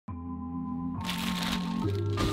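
Music opening: sustained low chords held steady, with a hiss-like noise layer entering about a second in.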